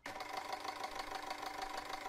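Electric hand mixer motor running steadily with a rapid, knocking rattle that sounds like an idling diesel engine, the 1.9 TDI it is likened to.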